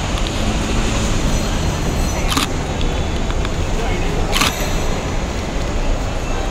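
Steady traffic noise with a low rumble and murmuring voices in the background. Two short sharp noises come about two seconds apart.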